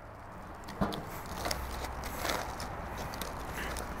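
A metal drum smoker's lid is lifted off, with a single knock about a second in, followed by soft rustling as the foil-wrapped ribs are handled.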